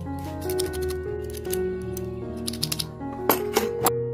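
Steel hand file rasping in quick, irregular strokes against the edge of a copper ring, under background music, with a few louder strokes near the end.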